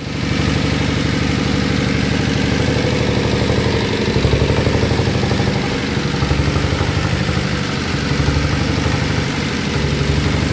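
Yanmar NS40 single-cylinder horizontal diesel engine running steadily at idle with a fast, even beat, louder after the first half second.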